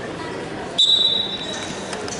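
A referee's whistle: one short, steady, high blast about a second in, starting the wrestling from the top-and-bottom referee's position, over the murmur of a gym.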